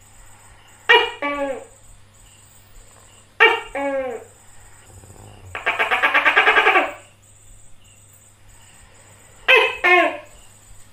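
Tokay gecko calling "to-kek": loud two-note calls, each a sharp first note and a falling second note, coming about every two and a half seconds, with a fourth call starting near the end. About halfway through there is a rapid rattling call of about a second and a half. Under it all runs a steady high pulsing insect buzz.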